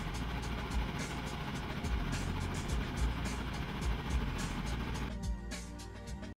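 Background music with a steady beat, thinning to a few held notes about five seconds in as it winds down.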